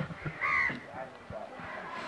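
A crow cawing: one short call about half a second in, with a weaker call just after.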